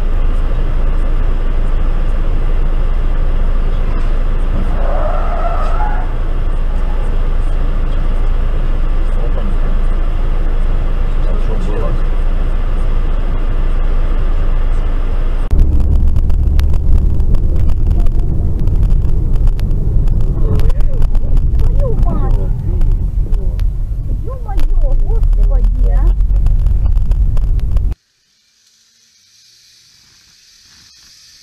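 Steady engine and road noise inside a moving car, recorded by a dashcam, in two clips: the second, starting about halfway, is louder with a heavier low rumble. It cuts off to near silence shortly before the end.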